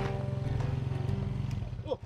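Small motorcycle engine running steadily at idle, dying away near the end.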